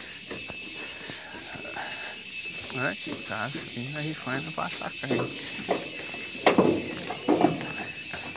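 Indistinct voices talking in snatches over a quiet outdoor background, with a faint steady high-pitched tone underneath.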